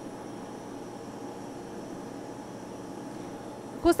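Steady background noise with a faint hum and no distinct events.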